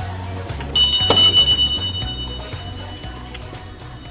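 A doorbell rings: a bright bell tone starts suddenly about a second in and fades away over the next two seconds or so. Background music plays underneath.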